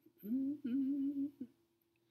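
A man humming briefly with closed mouth, two short phrases of a wavering tune lasting about a second in all.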